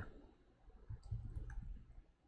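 A few faint clicks from a computer mouse and keyboard, about a second and a second and a half in, over a low rumble.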